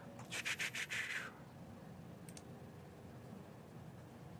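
A scratchy rub lasting about a second near the start, then a faint double click about two seconds in from a computer mouse selecting an item. The rest is low room hum.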